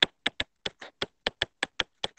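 A stylus tapping and clicking on a tablet's glass screen during handwriting: about ten short, sharp ticks in two seconds at an uneven rhythm, one for each pen stroke.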